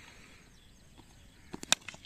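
A few sharp knocks close together about one and a half seconds in, the last and loudest a wooden cricket bat striking the ball, over faint outdoor background.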